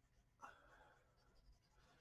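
Near silence, with a faint graphite pencil stroke scratching on paper starting about half a second in, during shading of a pencilled comic page.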